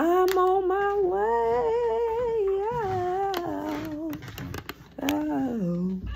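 A woman humming a slow, wordless tune: one long drawn-out phrase lasting about four seconds, then a shorter phrase near the end, with a few sharp clicks among it.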